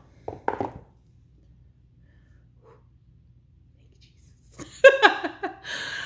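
A woman laughing briefly, then a few seconds of quiet with a faint low hum, then excited wordless vocal exclamations near the end.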